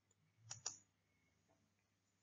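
Two faint, sharp clicks in quick succession about half a second in, otherwise near silence.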